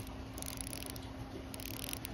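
Seiko Prospex SBD179 dive watch's unidirectional bezel being turned by thumb, giving a few faint ratcheting clicks, "a little bit of a click".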